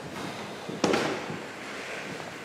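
A single sharp knock or bang, about a second in, with a short echo in a large hall, over low room noise.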